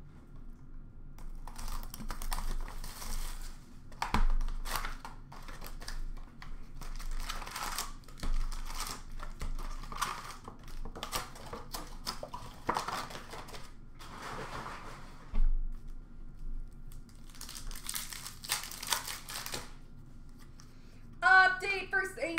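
Foil trading-card packs crinkling and tearing as they are opened by hand. The rustling comes in repeated bursts, with a few sharp knocks in between.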